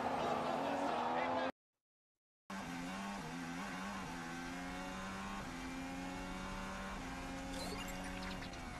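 Formula 1 car engine sound heard from an onboard camera: the 2015 Toro Rosso's V6 turbo-hybrid running along a street circuit, its pitch stepping up and down with gear changes. Before it come about a second and a half of race-car and track noise from the end of a crash replay, then a second of dead silence at a cut.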